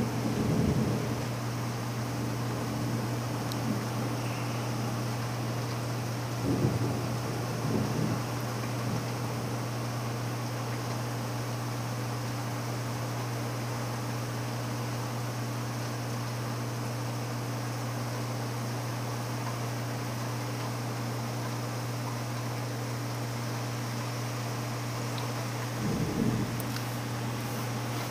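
Heavy thunderstorm rain as a steady hiss, over a steady low hum, with brief low rumbles about six to eight seconds in and again near the end.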